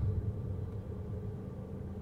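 Steady low rumble of a Jeep being driven, engine and road noise heard from inside the cabin.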